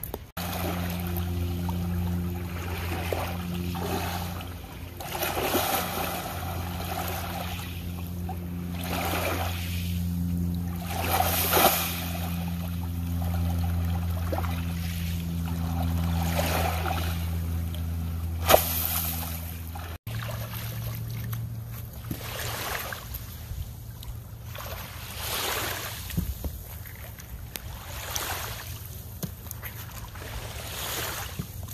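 Shallow lake water splashing and sloshing in repeated swells as a person wades and moves a heavy log, over a steady low hum that changes abruptly about two-thirds of the way through.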